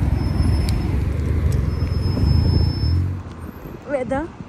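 Road traffic on a busy street: a loud low rumble of passing vehicles that drops away sharply about three seconds in.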